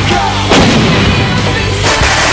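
Towed howitzer firing: a sharp blast about half a second in and another bang near the end, over background music.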